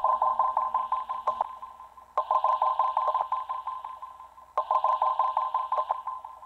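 Electronic dance track in a sparse break: a rapid, evenly repeated synth note, about eight hits a second, played in three phrases that each start loud and fade away, the second about two seconds in and the third about four and a half seconds in.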